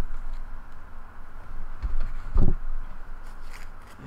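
Handling of a wooden card box: quiet scraping and shuffling with one dull knock of wood a little past halfway.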